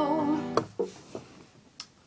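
A held, wavering sung note over a strummed acoustic guitar chord that is still ringing, both ending about half a second in. Then come a few soft knocks as the guitar and camera are handled, and a sharp click near the end from a hand pressing the recording device.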